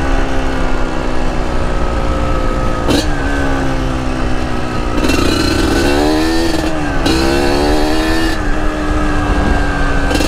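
Kawasaki KMX125 two-stroke single-cylinder engine running under way, its pitch mostly steady with a brief dip about three seconds in and a rise and fall of revs a few seconds later, over low wind rumble. The engine is still in its break-in period.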